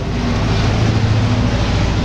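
Steady motor noise: a low hum under an even hiss, loud and unchanging through the pause.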